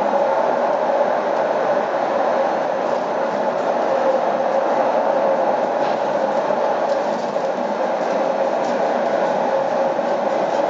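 Rail-guided public lift car of the Via Balbi–Corso Dogali ascensore travelling along its track through the tunnel: a steady running noise with a constant hum. A few faint ticks come in the second half.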